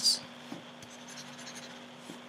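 Faint scratching with a light click about half a second in, from a computer pointing device as ink marks are erased from a drawing.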